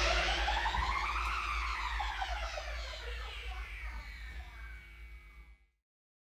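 The closing ring-out of a live industrial metal band's song: a held chord with sweeping glides that rise and then fall, fading steadily to silence about five and a half seconds in.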